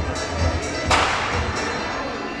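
Background music with a steady beat, about two beats a second, and about a second in a single sharp thud as a gymnast lands a leap on a wooden balance beam.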